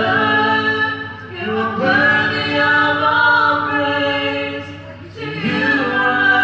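A group of voices, women's and men's, singing a worship song with long held notes. The singing comes in phrases with brief dips between them, about a second and a half in and again near the end, with little accompaniment standing out.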